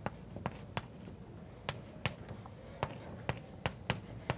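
Chalk writing on a blackboard: an irregular run of sharp taps and short scratches as symbols are written, with a pause of about a second near the start.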